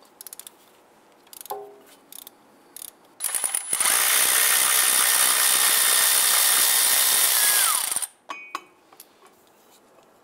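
A few light clicks of a hand socket ratchet, then a cordless electric ratchet runs steadily for about four and a half seconds, spinning out a starter mounting bolt. Its high whine drops in pitch as it stops.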